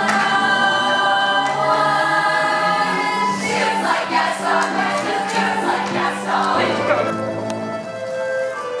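Stage chorus of voices singing with a pit orchestra, holding long chords at first, then turning busier and more ragged about halfway through.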